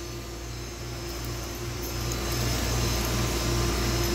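Steady hum and rushing noise of a fish hatchery's tank room: a low hum with a steady tone above it, growing gradually louder.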